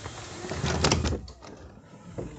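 An interior door being opened and pushed through: a latch and handle clatter with several sharp clicks, loudest a little under a second in, then fading.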